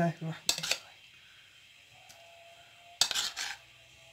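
Metal spoon clinking against bowls while scooping boiled rice into small glass bowls of food colouring: a short clatter about half a second in and a longer one at about three seconds.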